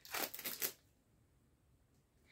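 Packing tape being pulled and torn off a cardboard box: a few short, scratchy rasps in the first half-second or so.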